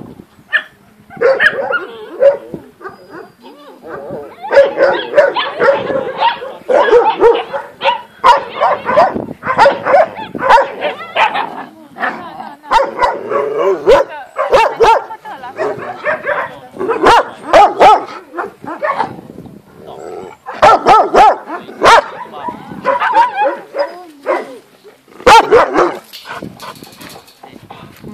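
Several dogs barking behind wire fences, many short barks overlapping on and off.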